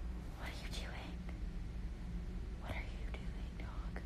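Soft, breathy whispering close to the phone's microphone, heard twice, about two seconds apart, over a faint low steady hum.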